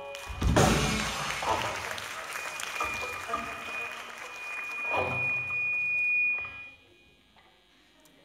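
A rock band's closing hits: drums, cymbals and electric guitars strike together about half a second in and ring out, strike again about five seconds in, and cut off suddenly near seven seconds. A high steady tone sounds over the ringing for several seconds.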